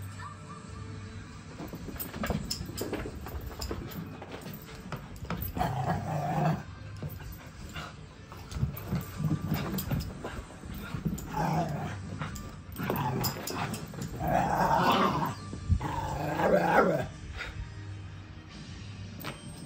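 A small dog growling and barking in play during a bout of zoomies, in repeated bursts that get louder toward the end.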